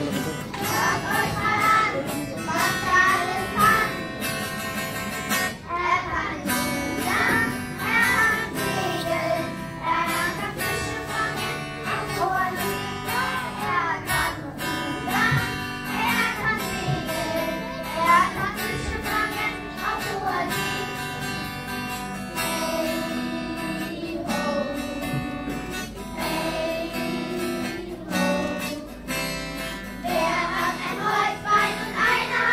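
A group of children singing a song together to instrumental music.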